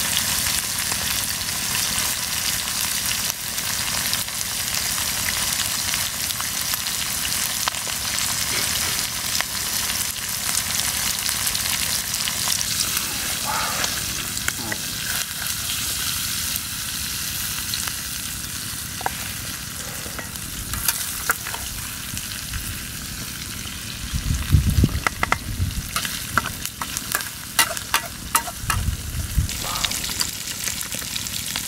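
Chopped eel sizzling as it is stir-fried in a hot steel wok, a spatula scraping and stirring through it. In the last few seconds come sharp clicks and a few low thumps as the food is scooped out of the pan.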